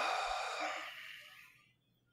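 A person's long, breathy exhale close to the microphone, fading away over about a second and a half.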